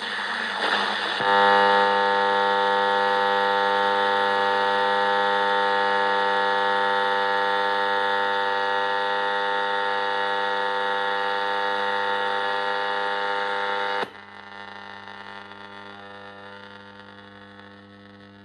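Weston Four Band Silicon transistor radio's speaker giving a loud, steady buzzing drone instead of a station while its bands are being tried. About 14 seconds in the buzz cuts off suddenly, leaving a faint hum.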